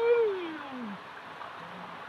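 A man's drawn-out hummed "mmm" of relish while chewing fish, rising in pitch and then sliding down over about a second.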